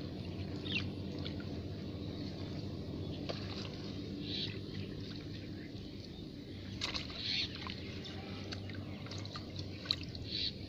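A hand splashing and patting shallow muddy water around a plastic bottle trap, with irregular small sloshes and a couple of sharper slaps near the end. A steady low hum runs underneath.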